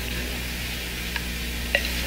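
Steady hiss over a low hum, the noise floor of an old television soundtrack, with a couple of faint ticks.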